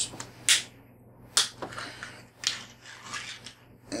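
A metal fork clicking and scraping inside an open sardine tin as a sardine is worked loose: a handful of sharp, irregular clicks.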